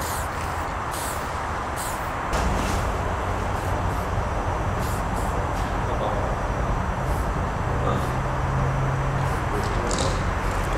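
Steady traffic rumble from the highway overpass overhead, louder from about two seconds in, with a passing heavy vehicle's drone near the end. Several short spray-paint can hisses sound over it.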